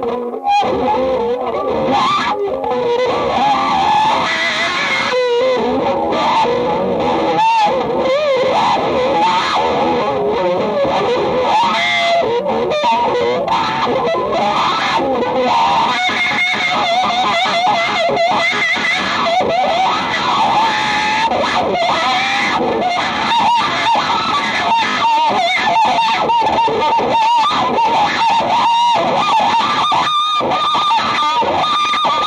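Electric guitar played through effects pedals in free solo improvisation: a dense, continuous mass of wavering, sliding notes, broken by brief drops just after the start and about seven and a half seconds in.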